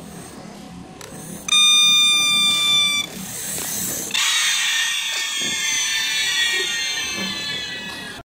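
A loud, steady, high-pitched beep, about a second and a half long, starting about a second and a half in. From about four seconds in it gives way to a denser sound of several high tones together.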